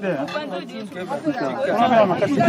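Several people talking at once: overlapping voices of a crowd chatting.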